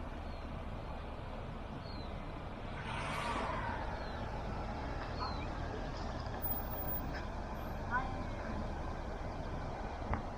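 Steady background rumble of distant road traffic, with a brief louder rush of hiss about three seconds in. A few short, high bird chirps are scattered over it.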